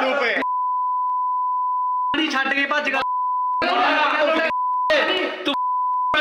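A steady, high censor bleep tone blots out abusive words, at first for about a second and a half and then in three shorter pieces. Between the bleeps come short bursts of men shouting slogans, recorded on a phone.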